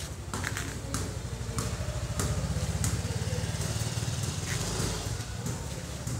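An engine running steadily, a low pulsing rumble that grows a little louder in the middle, with a few faint clicks over it.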